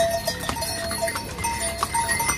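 Ponies walking past on a wet stone path: hooves clopping on the stone while small bells on their harnesses ring in short, irregular chimes.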